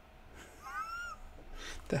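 A single short high-pitched call, rising then falling in pitch, about half a second long, a little after the start.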